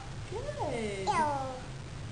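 A toddler imitating a cat, saying 'meow' twice in a high voice, each call sliding down in pitch.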